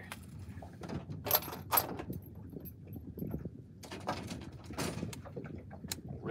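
Fishing reel being cranked as a spinnerbait is retrieved, with scattered rustles and clicks of rod handling and a sharp click near the end, over a low steady rumble.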